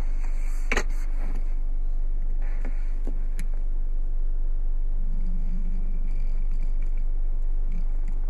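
Steady low hum inside a parked car's cabin, with a sharp click about a second in and a few faint ticks.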